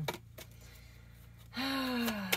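A woman's long, audible sigh, beginning about one and a half seconds in, after a quiet pause with only a faint low hum.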